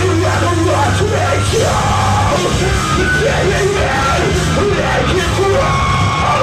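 Hardcore/screamo band playing live: distorted electric guitars, bass and drums under a wavering lead vocal line that carries throughout.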